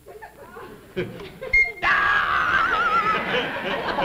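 Studio audience laughing, growing from a murmur to loud laughter about two seconds in, with a warbling whistle-like sound effect over the laughter for a second or so.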